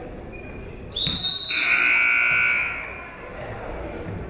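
A short, high referee's whistle about a second in, followed at once by the gym's scoreboard horn sounding loudly for about a second before it dies away, over the hall's background noise.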